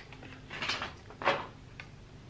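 An eyeshadow palette slid out of its printed cardboard box: two short scraping rubs of card, about half a second in and again a little past one second.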